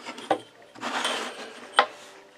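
Pencil lead scratching across rough pallet wood while drawing a line, a short scratchy rasp about a second in. A sharp tap near the end as the steel ruler is moved on the wooden bench.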